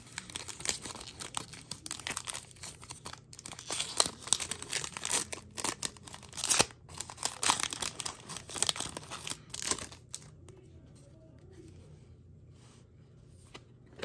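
Foil wrapper of a Topps Chrome MLS trading-card pack being torn open and crinkled as the cards are slid out. The crackling stops about ten seconds in.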